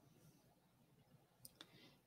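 Near silence broken by two faint computer mouse clicks about one and a half seconds in, setting up a screen share.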